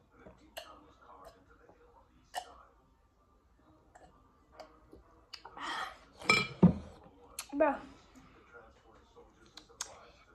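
Gulping pickle juice from a glass, with small swallowing clicks, then a loud gasping exhale as the drink is finished and a knock as the glass is set down on the wooden table.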